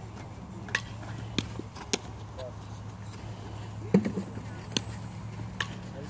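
Scattered sharp knocks of a softball being handled in infield practice, about six in all, the loudest about four seconds in. A steady low hum runs underneath.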